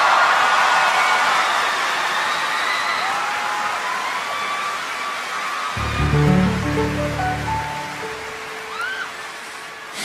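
A large audience cheering and screaming, with a few whoops, slowly fading. About six seconds in, low sustained keyboard chords come in.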